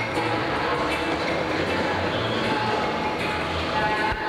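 Skateboard wheels rolling steadily across a wooden vert ramp, with music playing in the background.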